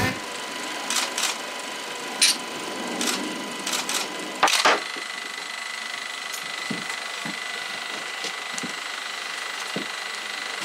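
Scattered short clicks and knocks, the loudest a quick double knock about four and a half seconds in, then a few soft thuds, over a steady hiss with a faint high hum.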